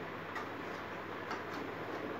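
A few faint, short taps on a wooden bed headboard over a steady background hiss, unevenly spaced: a small child's hand patting the headboard.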